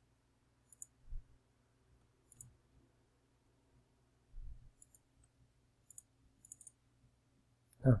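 Faint computer mouse clicks, single and in quick pairs, about six times with pauses between, as files are right-clicked, extracted and opened. Two soft low thumps, about a second in and about four and a half seconds in, are the loudest sounds.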